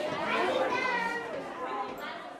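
Several children's voices talking over one another, getting quieter near the end.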